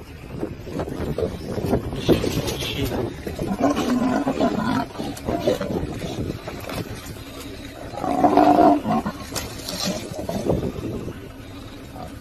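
Growling from a lion grappling with a wildebeest, over scuffling noise. The growls come in two stretches, the louder one about eight seconds in.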